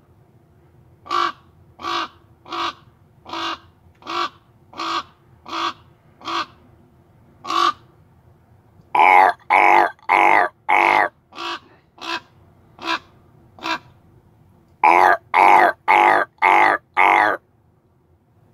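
A crow-family bird cawing just outside a vehicle window. First comes a run of about nine short calls, roughly one every three-quarters of a second. Then two runs of louder, longer, harsher caws follow, each falling in pitch.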